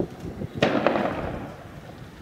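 A single sharp bang a little over half a second in, trailing off over about a second.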